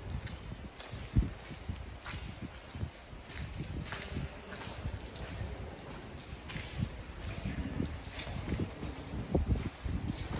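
Footsteps of several people walking on the gravelly floor of a disused railway tunnel, irregular steps and scuffs over a steady low rumble.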